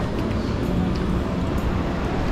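Steady low rumbling background noise with no distinct events, the kind a strong draught or passing road traffic makes on the microphone.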